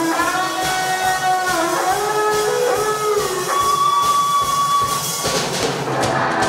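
Electric guitar playing a slow lead melody of sustained notes with string bends, over a steady low beat.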